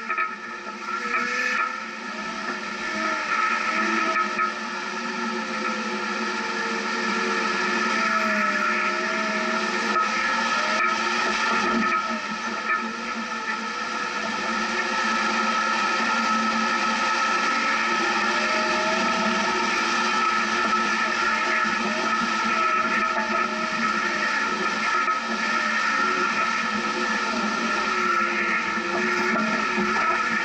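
Off-road vehicle creeping along a rough dirt trail: a steady mix of engine and road noise picked up by the vehicle-mounted camera.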